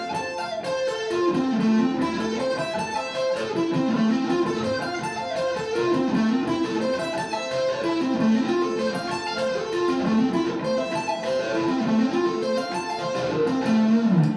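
Electric guitar playing A minor and F major arpeggios one after the other, fast single notes running up and back down each chord shape. The pattern cycles about every two seconds.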